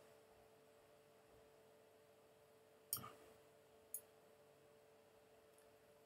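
Two short computer-mouse clicks about a second apart over near-silent room tone with a faint steady hum.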